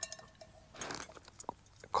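A titanium mug faintly ringing out after a clink, then soft rustling and a few light clicks as the mug and a small item are handled.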